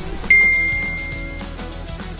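Background music, with a single bright bell-like ding that strikes about a third of a second in and rings out, fading over about a second.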